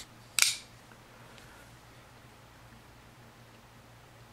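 Strider SMF folding knife flipped open: a faint click as the blade leaves the handle, then one sharp metallic snap about half a second in as the blade swings out and locks.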